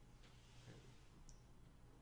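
Near silence: room tone with a faint steady low hum and a couple of faint short clicks.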